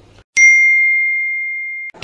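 A single bell-like ding: one clear tone that strikes about a third of a second in and dies away slowly, then cuts off abruptly just before the end. It sits in dead digital silence, like an edited-in sound effect.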